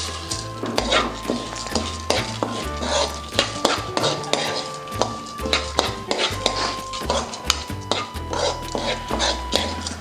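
A metal spoon stirs and scrapes sunflower seeds around a kadai as they dry-roast, with many small clinks and the seeds rattling against the pan. Background music with a steady bass line plays underneath.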